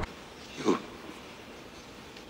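A quiet, faint hiss with one short spoken word, "you", about half a second in.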